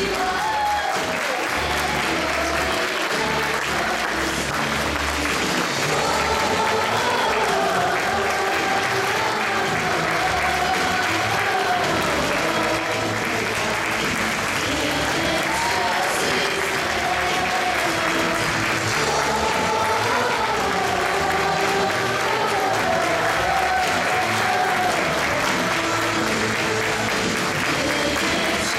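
Audience applauding steadily, with melodic music playing underneath.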